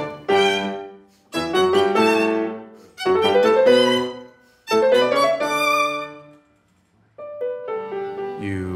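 Violin and piano playing together in short phrases, each starting suddenly and dying away, with brief breaks between them. After a near-silent pause about six and a half seconds in, the playing resumes more softly.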